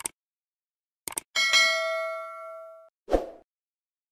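Subscribe-button animation sound effects: a sharp click, a quick double click about a second later, then a notification-bell ding that rings out and fades over about a second and a half, followed by a short thump near the end.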